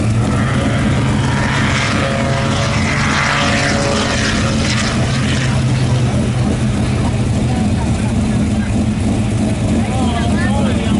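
Cars idling at a drag strip starting line: a steady low engine hum, with a rushing noise that swells and fades between about one and five seconds in.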